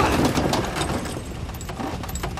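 Police car engine running steadily just after the car skids to a halt, with scattered light clicks and clinks over it; a tyre squeal ends right at the start.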